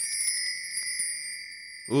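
A bright chime sound effect: several high ringing tones struck together once, slowly fading out over about two seconds.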